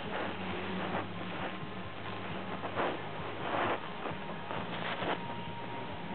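Soft rustling and handling noises as a rose cutting in a white plug is pulled up out of a small vase, with a few brief louder rustles, over a low steady hum.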